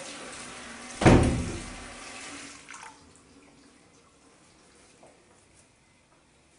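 A single heavy thump about a second in, booming briefly as it dies away, over a steady hiss of running water that stops after about two and a half seconds. A few faint clicks follow.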